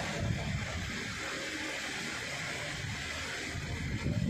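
Steady background noise of a crowded hall, an even hubbub with no distinct events.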